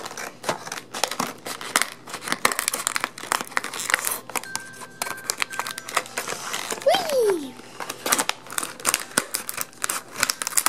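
Plastic packaging of a toy multipack crinkling and crackling as it is handled and pulled open, a dense run of rapid crackles, with a short falling squeak about seven seconds in.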